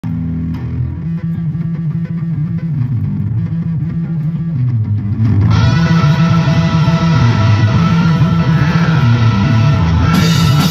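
Live rock band playing, amplified. At first a bass guitar riff plays with little above it. About halfway through the full band comes in louder, with electric guitar, drums and cymbals.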